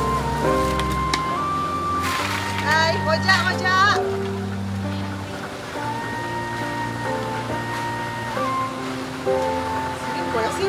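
Background music of long held notes over a steady low bass, with a wavering, bending melody line from about two to four seconds in.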